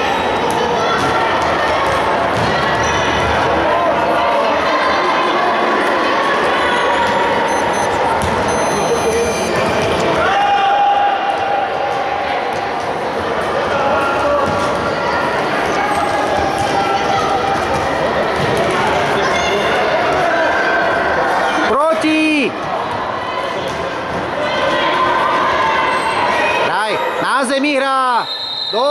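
Futsal ball kicked and bouncing on a hard indoor court, with players and spectators shouting throughout, echoing in a large sports hall.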